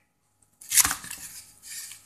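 Handling noise as a rubber timing belt is lifted and moved over cardboard beside loose metal rollers: a sudden scrape and clatter about half a second in that fades over most of a second, then a softer rustle near the end.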